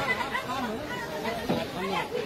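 Several people talking at once, voices overlapping.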